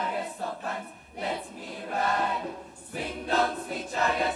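A boys' school choir singing, in phrases broken by brief pauses about one second and three seconds in.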